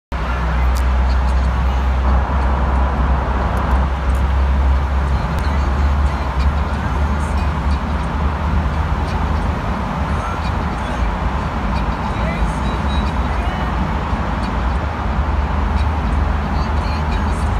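Steady low rumble of a car's road and engine noise heard from inside the cabin while driving through a road tunnel.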